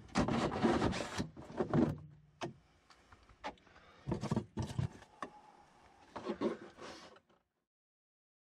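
Cordless drill with a hole saw cutting through the plastic wall of a sump basin for about the first two seconds, then scattered knocks and scrapes of the plastic basin being handled.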